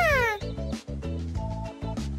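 A cartoon dinosaur's high vocal squeal slides down in pitch and ends within the first half-second. Light background music carries on alone after it.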